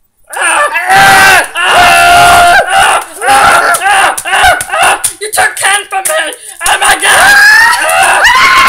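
Girls screaming and yelling loudly without words, in long high-pitched shrieks broken by short gaps, starting a moment in.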